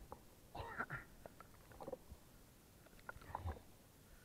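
Lake water lapping and sloshing against a waterproof action camera at the water surface. It is faint, with a few brief wet splashes: one about a second in, one near two seconds and one a little past three seconds.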